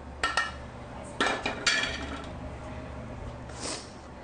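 Metal tongs clinking against a metal skillet as seared bison chunks are lifted out onto a plate of pasta. There are two quick ringing clinks near the start, then three more a little over a second in.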